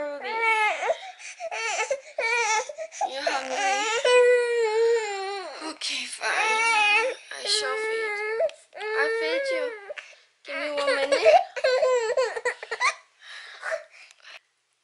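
A seven-month-old baby girl fussing and crying in a string of high-pitched, wavering wails, each a second or two long with short breaks between, that die away shortly before the end.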